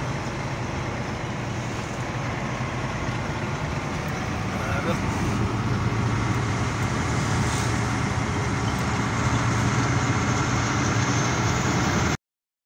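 Engine and road noise of a moving vehicle heard from inside it: a steady low drone that grows louder about halfway through.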